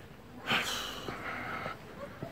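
A sudden breath out or sniff close to the microphone about half a second in, trailing off over about a second.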